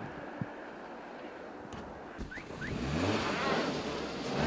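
A car engine revving up, its pitch rising, starting about three seconds in after a quiet stretch of background hiss.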